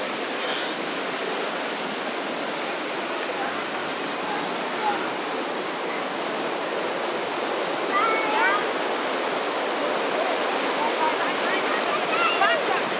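Steady rush of fast-flowing water from a mountain stream. Brief snatches of passers-by's voices come through about two-thirds of the way in and again near the end.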